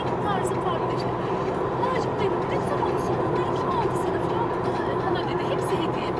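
Steady road and engine noise inside a moving car's cabin at highway speed, with faint, indistinct talk.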